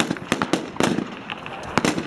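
Rifle fire from several shooters firing prone on a firing line: a string of sharp single shots at uneven intervals, some close together.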